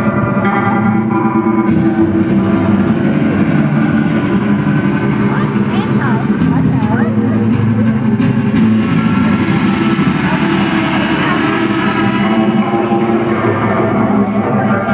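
Two electric guitars played live through effects pedals: layered, sustained tones in a steady wash, with wavering, gliding pitches about five to seven seconds in.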